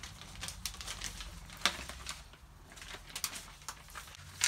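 Packaging being handled: scattered light rustles and small taps, with one sharper click about a second and a half in.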